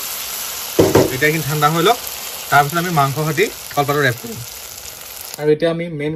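Onion and tomato masala frying in oil in a kadai, with a steady sizzle while a spoon stirs it. The sizzle cuts off suddenly about five seconds in.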